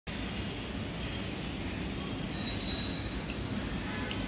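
Steady low rumbling background noise with no clear events.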